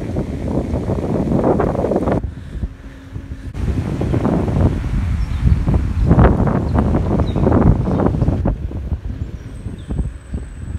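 Wind buffeting the microphone of a camera moving along a road, a rough low rumble in gusts. It drops away for about a second after two seconds in, and again near the end.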